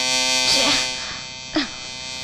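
Electric shaver buzzing steadily, fading out about a second in, with two short vocal sounds over it.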